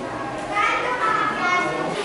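People's voices in the background, with high-pitched talking that grows a little louder after about half a second in.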